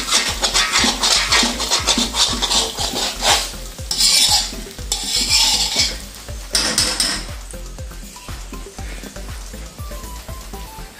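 A spatula scraping and stirring meat around a metal wok over heat, with the food sizzling; the stirring strokes are dense and quick at first and thin out after about seven seconds.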